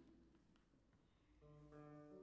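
A quiet pause, then about one and a half seconds in an acoustic guitar begins playing, its first few plucked notes ringing on.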